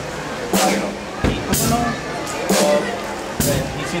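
Drum kit played at a slow, even pulse: a sharp stick hit that rings on, about once a second, with a bass-drum kick between two of them.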